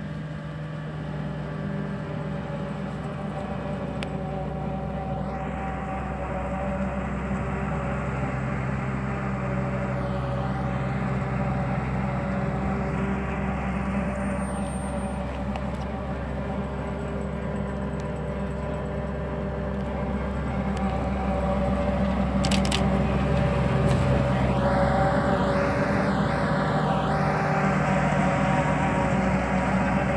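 John Deere combine harvester's diesel engine running at a steady speed as the machine drives along. It grows louder from about twenty seconds in.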